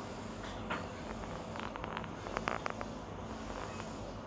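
Thick gravy bubbling in an aluminium kadai while a steel ladle stirs it: a scatter of faint pops and clicks through the middle, over a steady low hum.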